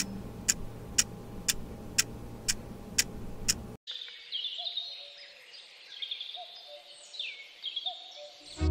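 A clock ticking steadily, about two ticks a second, over a low hum, cut off abruptly at nearly four seconds in. Birdsong follows: repeated chirps and quick falling whistled notes.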